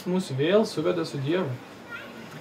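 A person speaking with a strongly rising and falling, sing-song intonation, most likely the interpreter translating the lecture into Lithuanian. The voice stops about one and a half seconds in, leaving quiet room tone.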